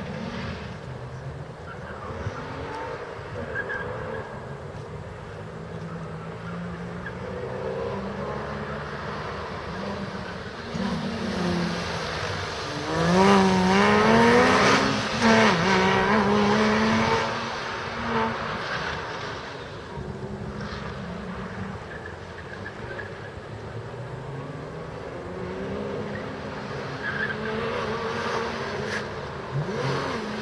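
Porsche Cayman's flat-six engine revving up and falling back over and over as the car accelerates and brakes through a cone course. It is loudest about halfway through, where tires squeal as well.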